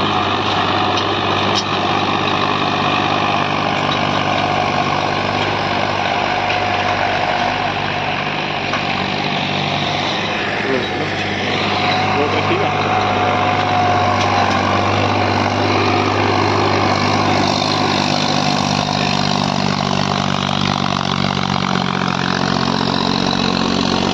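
Tractor diesel engine running steadily at constant speed while pulling a 9x9 disc harrow through ploughed soil, its note holding without dropping under the load.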